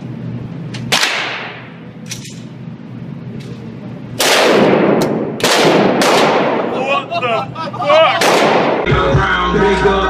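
Handgun shots fired at an indoor range, each with a sharp crack and a reverberating tail. One shot comes about a second in, then a quick string of three or four from about four seconds, and a last one after eight seconds. Music starts just before the end.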